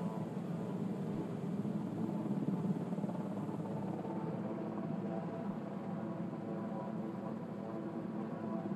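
A steady, low mechanical drone with faint engine-like tones running through it and no distinct knocks or changes.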